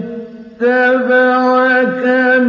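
A male reciter chanting the Quran in the melodic mujawwad style. The voice drops away briefly at the start, then comes back on a long, held, ornamented note.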